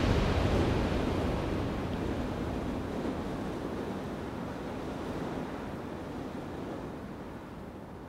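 A wash of noise trailing off the end of the electronic dance music set, with no beat or notes left, fading away steadily with the highs dying first.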